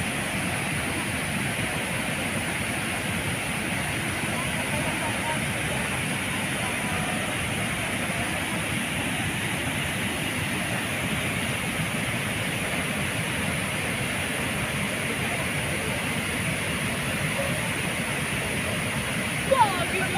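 Floodwater rushing over a river weir, a steady, even noise without let-up. A brief louder sound with a sliding pitch near the end.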